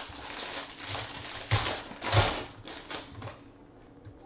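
A foil trading-card pack wrapper being torn open and crinkled by hand: a run of crackling rustles, loudest twice around the middle.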